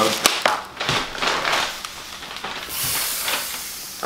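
Rustling packing paper, then air hissing out of a squeezed green rubber squeeze toy for under a second, a fart-like noise. A burst of laughter comes at the very end.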